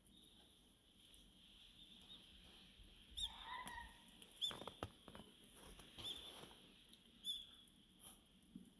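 Faint, short high-pitched chirps, four of them spread through the second half, with a few soft clicks in between.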